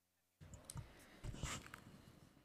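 The sound cuts in suddenly about half a second in: clicks, light knocks and rustling close to a microphone, typical of a table microphone being switched on and handled, with papers shifting.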